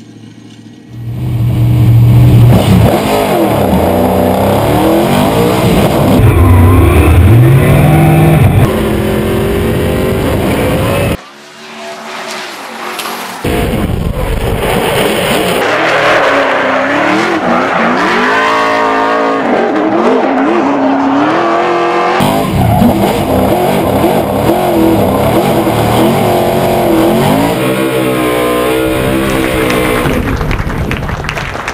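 Ford Mustang RTR drift car's engine revving up and down hard through drifts, with tyre squeal. The sound jumps from shot to shot; it drops out briefly about eleven seconds in and comes back a couple of seconds later.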